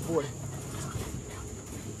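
American Bully puppies whimpering and panting.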